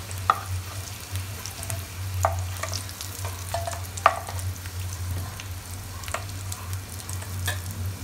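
Boiled potatoes sizzling in hot oil in a pan while a steel spoon scrapes and clinks against the pan, lifting them out once they are fried golden; the sharpest clink comes about four seconds in. A steady low hum runs underneath.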